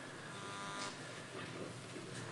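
Quiet room tone: a faint, steady hiss with no distinct event.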